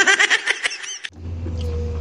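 A short burst of laughter in quick repeated pulses, which sounds edited in. About a second in it stops, and the backhoe's engine is heard running steadily from inside the cab as a low hum.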